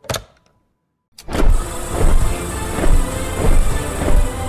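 A brief sharp sound right at the start, a second of silence, then cinematic ident music swells in about a second in, loud, with deep rumbling bass.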